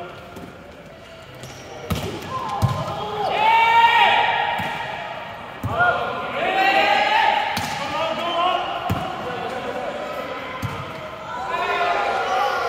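Volleyball rally in a large hall: hands and forearms slap the ball several times, near two seconds in, again just before six, and twice more late on, with players' long calls and shouts between the hits.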